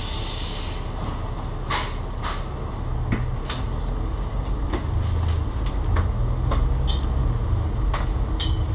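Cummins L9 diesel engine of an Alexander Dennis Enviro500 MMC double-decker bus heard from inside, running at a stop and then pulling harder as the bus moves off, getting louder from about halfway through. Scattered sharp clicks and knocks from the bus body run through it.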